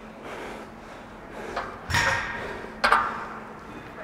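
A lifter's hard, gasping breath about two seconds in, after an exhausting set of barbell squats. Just before three seconds comes a sharp metallic clank of the loaded barbell in the squat rack, with a short ring.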